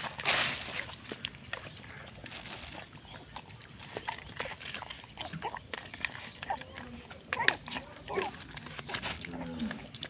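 Puppies eating from bowls: wet chewing and lapping made of many small clicks, with a few short whimpering cries about seven to eight seconds in. A brief rustling burst comes at the very start.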